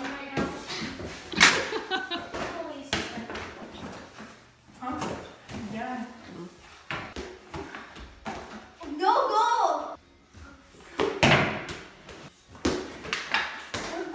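Repeated sharp knocks and clatter of a small ball and hockey sticks striking cardboard goalie pads, walls and a hard floor, with a voice calling out about nine seconds in.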